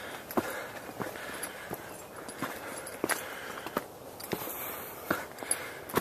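Footsteps of a hiker walking on a rocky dirt trail, about one step every two-thirds of a second.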